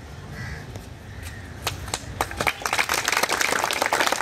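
A small crowd applauding by hand: a few scattered claps about a second and a half in, thickening into steady applause.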